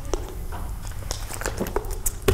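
A lecture-hall audience shifting and rustling in their seats: scattered small clicks and knocks over a steady low room hum.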